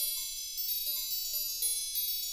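Intro jingle of bright, bell-like chime tones. New notes are struck several times a second, each left ringing over the others.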